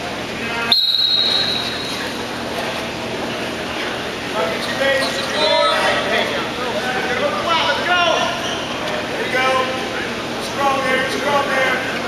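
Coaches and spectators calling out in a gym hall, voices coming and going. About a second in, a brief steady high-pitched tone sounds for about a second.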